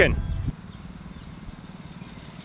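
A loud low rumble that cuts off suddenly about half a second in, then the steady low hum of a distant small engine.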